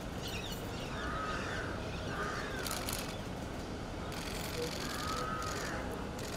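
A crow cawing three times, each a short arched call, over a steady street hum.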